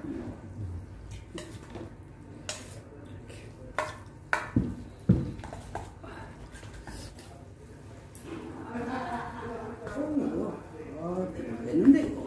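Metal chopsticks clinking and scraping against stainless steel bowls as cold noodles are mixed, with scattered sharp clicks. Voices murmur in the second half.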